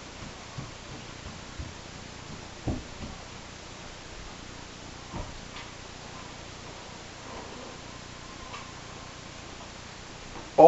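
Quiet kitchen room hiss with a few soft, scattered taps and ticks from hands spreading clumps of brown sugar over dough on a silicone mat, the loudest a little under three seconds in.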